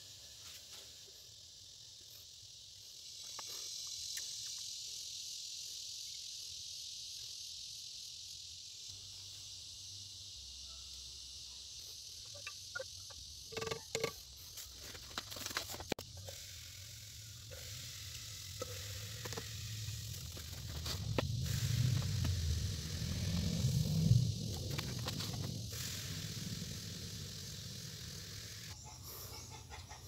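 Warm gold-bearing acid solution fizzing with a steady faint hiss as its foam settles. A few small clicks come midway, and a low rumble swells and fades later on.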